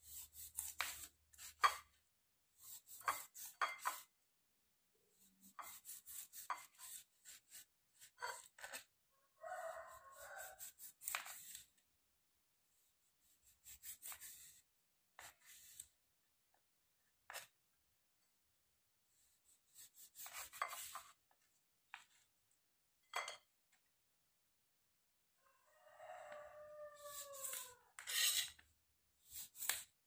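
Kitchen knife slicing limes on a plastic cutting board: groups of crisp cuts and taps as the blade goes through the rind and meets the board, with short pauses between slices.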